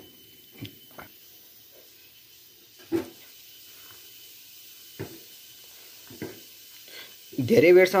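A steel cup knocking against the side of an aluminium saucepan of milk tea while stirring: about six separate clinks spread over several seconds, the loudest about three seconds in.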